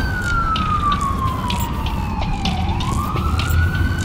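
Siren wailing slowly: one tone falls steadily for about two and a half seconds, then rises again. Underneath are a low rumble and scattered clicks.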